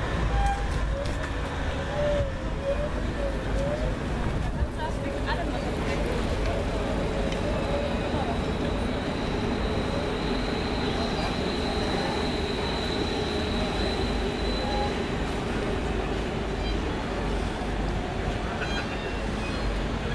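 Violin and double bass bowed in a free, noisy improvisation, with short sliding notes in the first few seconds and a thin high tone held for several seconds in the middle, over steady street noise.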